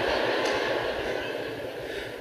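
Large audience laughing after a punchline, the crowd noise slowly dying down.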